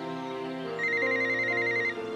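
Pink mobile phone's electronic alert, a rapid high warbling trill lasting about a second, over background music. It signals an incoming text message.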